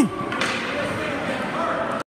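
A shouted cheer trails off at the very start, then echoing indoor ice rink ambience with distant voices and a faint knock about half a second in.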